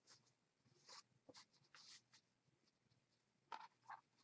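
Near silence, broken by a few faint, short rustles and brushes of cotton batik and canvas being handled as a tote bag is turned inside out.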